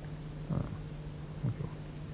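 A low, steady background hum on an old soundtrack, with two faint short sounds about half a second and a second and a half in.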